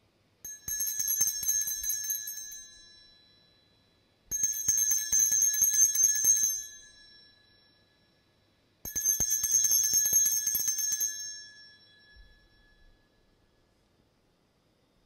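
Altar bells shaken three times, each a jangle of rapid strikes of about two seconds that rings and fades, a few seconds apart: the signal rung at the elevation of the chalice after the consecration.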